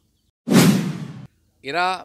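A short rush of air blowing straight into the microphones, starting abruptly about half a second in and fading out within a second, with no pitch to it.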